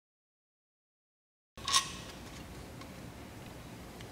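Dead silence for about a second and a half, then a single light clack as the throttle body is pulled free of the intake. Faint room noise with a few small ticks follows.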